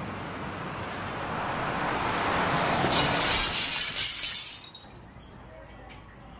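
Intro of a pop song recording: a noise swell that builds for about four seconds, with a crackling, glassy burst near its peak, then dies away to a faint hush.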